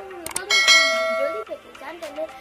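Subscribe-button animation sound effect: quick clicks, then a bright notification-bell ding that rings for about a second before cutting off.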